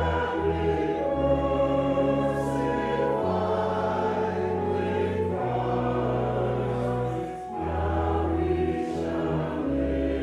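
Congregation singing a hymn together with organ accompaniment, the low bass notes held and changing about every two seconds.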